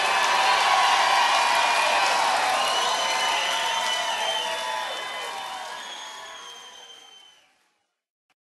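Concert audience applauding and cheering at the end of a live performance, fading out gradually and ending shortly before the end.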